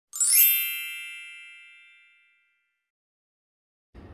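A bright chime sound effect: a quick upward sparkle that ends in a ringing ding of several high tones, fading away over about two seconds.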